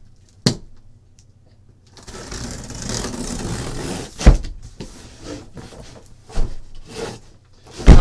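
A large cardboard case being shifted and turned over on a table: a scraping rustle of cardboard for about two seconds, then several sharp thuds as it is knocked and set down. The loudest thuds come about four seconds in and again near the end.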